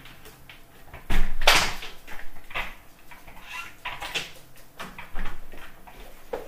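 A back door being shut: one loud sudden bang about a second in, then several fainter knocks and rustles.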